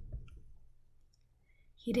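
A pause in a woman's read-aloud narration. Her voice trails off into near silence, broken only by a faint click just after the start, and she starts speaking again near the end.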